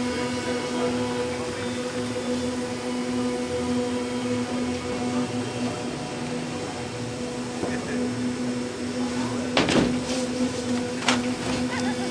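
A steady mechanical drone with a constant hum, with a couple of brief knocks near the end.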